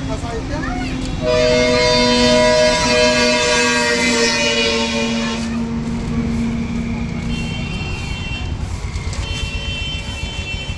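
A vehicle horn blows one long steady blast of about four seconds, starting about a second in, with two or more tones sounding together.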